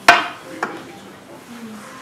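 Two sharp knocks: the first loud, with a brief ringing tail, and a fainter one about half a second later.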